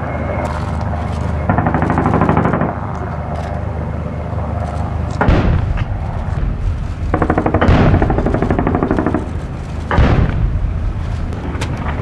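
Military helicopters, IAR 330 Pumas, flying past with a rapid rotor beat mixed with gunfire. In the second half come three sharp booms, a little over two seconds apart.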